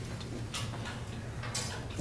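Quiet room tone with a steady low hum and a few faint, scattered clicks and rustles.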